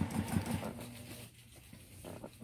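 Juki TL2010Q sewing machine stitching in free-motion quilting, a fast even run of needle strokes. About a second in it goes much quieter.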